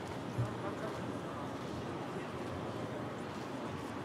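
Quiet indoor arena ambience with faint background voices, and one soft knock about half a second in.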